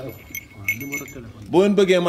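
Light metallic clinking and jingling with a thin high ringing, under a faint murmured voice; about one and a half seconds in, a man's loud speaking takes over.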